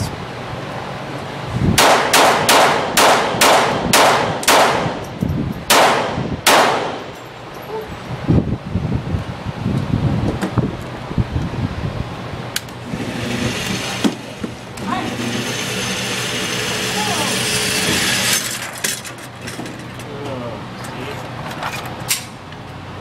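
About ten .22 pistol shots fired in quick succession, roughly two to three a second, each ringing off the walls of an indoor range. Several seconds later comes a steady whirring hiss for about five seconds, the target carrier bringing the target back to the booth.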